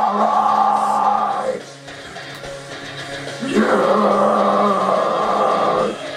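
Instrumental passage of the backing track: two long-held electric guitar chords, with a quieter stretch of about two seconds between them.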